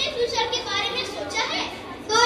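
A child speaking.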